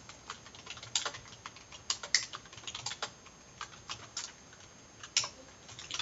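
Typing on a computer keyboard: irregular key clicks in quick runs with short pauses between them.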